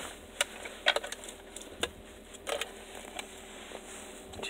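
A few faint, irregularly spaced plastic clicks and taps as an acrylic honor box of wrapped lollipops is handled.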